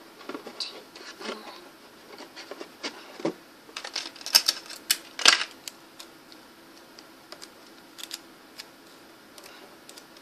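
Hands working sticky tape and cardboard close to the microphone: irregular clicks and crackles, with a burst of louder sharp clicks in the middle, then only a few scattered ticks. A faint steady hum underneath.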